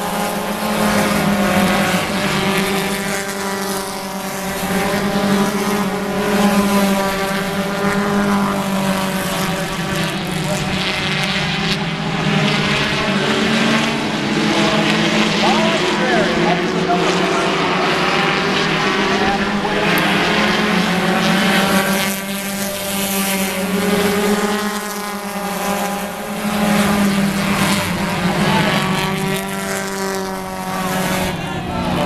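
Four-cylinder stock car engines racing in a pack around a short oval, running hard, with their pitch rising and falling as the cars pass and work through the corners.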